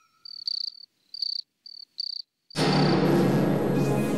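Crickets chirping in a series of short, high chirps; a little over halfway through, background music comes in.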